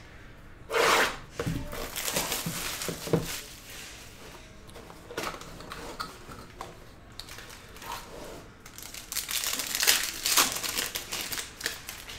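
Plastic wrapping crinkling and tearing as a trading-card hobby box is unwrapped and opened, with handling of the cardboard box. It comes in irregular rustles, loudest about a second in and again around nine to eleven seconds.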